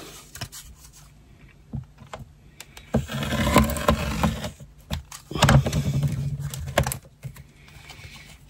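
A 45 mm rotary cutter rolling through a sheet of latex band rubber along a ruler on a cutting mat, in two passes of about a second and a half each. Light clicks of handling come before and after.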